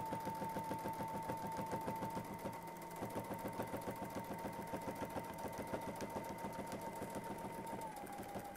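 Domestic sewing machine stitching steadily in ruler-work quilting, with the fabric guided by hand against a template under the ruler foot. Its motor whines on one steady note over a rapid, even ticking of the needle.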